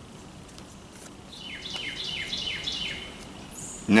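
A songbird singing a run of about six quick down-slurred notes over about two seconds, followed by a short, higher chirp.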